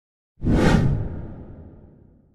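A whoosh sound effect that starts sharply about half a second in, with a low rumble that trails off and fades away over the next two seconds.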